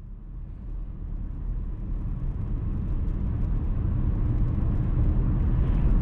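Road and engine noise of a moving car, heard inside the cabin: a steady low rumble that grows gradually louder.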